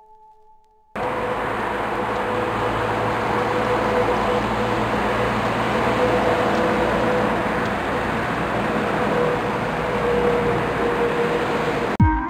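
Steady noise of a train running on rails, cutting in suddenly about a second in and holding at a level pitch with a faint steady tone in it, after a soft sustained tone that fades out.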